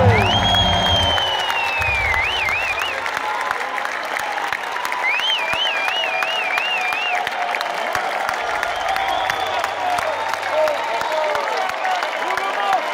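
Concert audience applauding and cheering as the band's music dies away at the end of a song. One long falling whistle and then warbling whistles cut through the clapping, with a few short shouts near the end.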